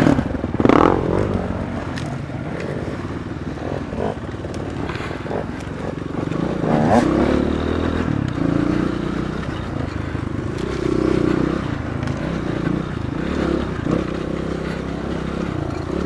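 Dirt bike engines running on a trail ride, the revs rising and falling with the throttle, with scattered short knocks and scrapes.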